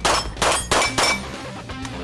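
A competition pistol fires four quick shots, about a third of a second apart. Each is followed by the ringing clang of a struck steel target. Background music plays underneath.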